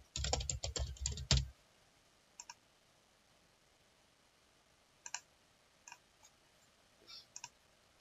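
Computer keyboard typing: a quick run of keystrokes for about a second and a half, then a few single mouse clicks spread through the rest.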